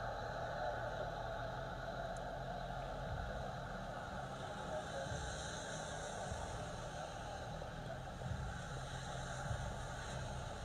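Steady outdoor hiss of rain and street noise, with a few faint low thumps.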